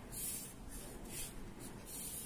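Pen scratching faintly across paper in a few short strokes, drawing straight lines.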